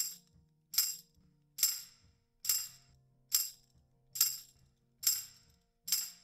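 Soloed tambourine track in a mix, struck on a steady beat about once every 0.85 s, eight hits in all. Each hit is a bright jingle followed by a short reverb tail. The tail comes from a short reverb with pre-delay that keeps the initial attack, pushes the tambourine back in the mix and adds a little sustain.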